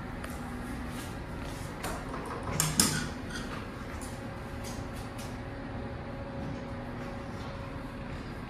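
Room tone with a steady low hum and scattered faint clicks of handling, and a short creaking scrape nearly three seconds in, the loudest sound.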